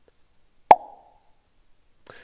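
A single sharp pop with a short tail that dies away quickly, about two thirds of a second in; otherwise near silence.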